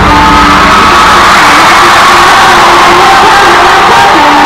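Live K-pop girl-group performance in a packed arena, heard from the stands: loud amplified music with a sung melody, over a screaming, cheering crowd. The deep bass drops out right at the start.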